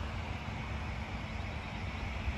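Steady low rumble of outdoor background noise with a faint steady hum.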